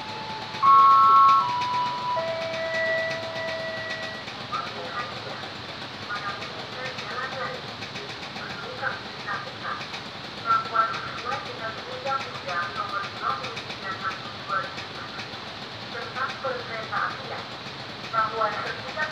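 Railway level crossing with a freight train passing: a horn blows loudly in a few steady notes during the first four seconds, the loudest about a second in, and the crossing's warning bell keeps chiming over the train noise.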